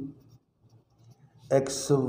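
Ballpoint pen writing on paper: faint, light scratches in a pause between spoken words.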